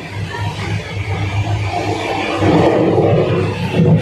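Steady rumble and rushing noise of a moving express train heard inside a coach toilet, swelling louder about halfway through.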